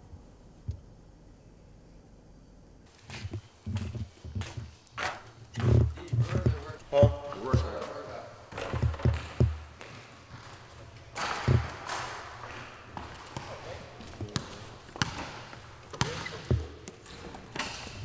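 Basketballs bouncing on a hardwood gym floor: irregular thuds, sometimes in quick pairs, starting about three seconds in, with voices in the background.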